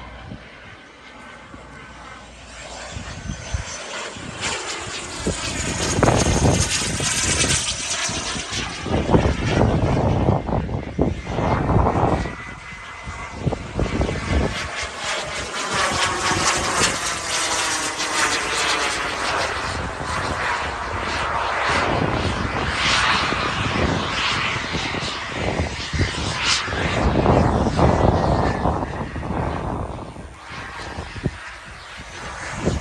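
Turbine-powered BVM BDX radio-control model jet flying fast passes overhead. Its turbine's rushing whine swells from about three seconds in, dips briefly near the middle, then stays loud through the following passes.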